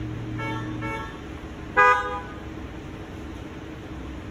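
A digital piano's last chord fades out in the first second, then a car horn sounds: two short quick toots and, about two seconds in, a louder, brief honk.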